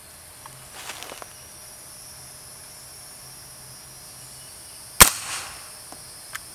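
A single shot from an MP5SD, an integrally suppressed 9mm submachine gun, firing a 115-grain round about five seconds in: one sharp report with a short echo after it. It is the first round through the suppressor and is pretty loud, which the shooter thinks could be first-round pop.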